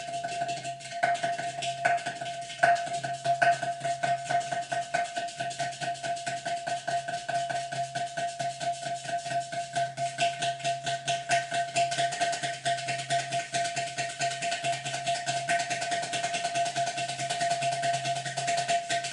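Ghatam, the South Indian clay-pot drum, played by hand in a fast, continuous rhythm of finger and palm strokes over a steady ringing pitch, with a few louder accents in the first few seconds.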